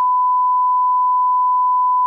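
Censor bleep: one steady, loud, single-pitched beep held throughout, masking crude speech.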